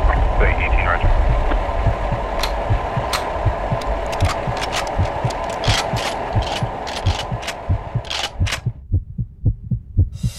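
Cinematic tension sound design: a steady hiss of radio-like static under deep thumps that come more and more often. About nine seconds in the static cuts off, leaving only the quickening thumps.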